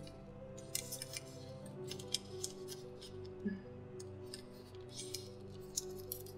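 Origami paper crackling and rustling in short, crisp bursts as fingers fold a flap and press the crease flat, over soft background music with sustained notes.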